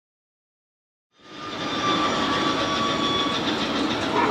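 Big Thunder Mountain mine-train roller coaster running on its track during test runs. It fades in a little over a second in and then holds steady, with a thin high whine running through it.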